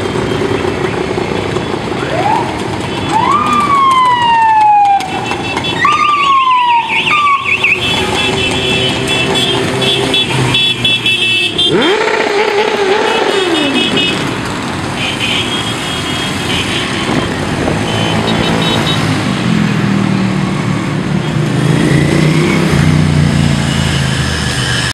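A stream of motorcycles riding past one after another, their engines running and revving. Several high rising-and-falling wails sound in the first several seconds.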